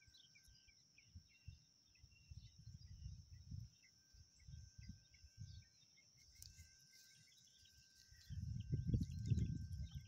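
Outdoor ambience: a steady high insect drone with many short bird chirps, over intermittent low rumbling on the microphone that gets much louder for the last two seconds or so.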